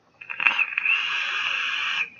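A vape being drawn on: a steady hiss of air pulled through an RDA atomizer on a Manhattan Apollo hybrid mechanical mod as it fires, lasting nearly two seconds, with a few crackles as it starts.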